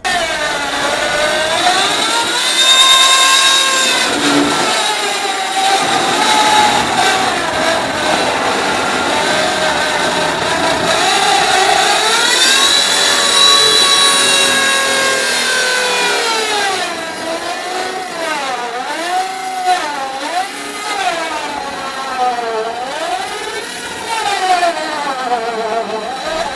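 Cheap handheld electric circular saw running and cutting through a plastic barrel. Its motor whine rises and falls in pitch as the blade loads and frees in the cut, and it wavers more often in the second half.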